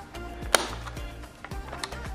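A sharp plastic click about half a second in, with smaller ticks later: the 3D-printed round latch on the underside of a Shark Navigator vacuum's floor head snapping into place as it is turned with a screwdriver, the sign that the replacement part locks. Background music with a steady beat runs underneath.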